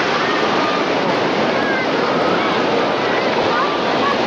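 Steady rush of shallow ocean surf washing in around the feet, with faint voices of other people mixed in.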